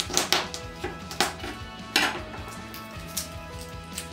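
A chef's knife knocking on a plastic cutting board as a garlic clove is crushed under the flat of the blade: a few sharp knocks, near the start, about a second in and at two seconds.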